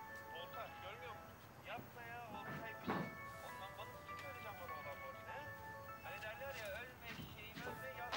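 A mobile phone ringing faintly with a melodic ringtone, a tune of held and wavering notes.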